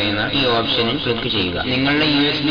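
A man speaking, talking continuously.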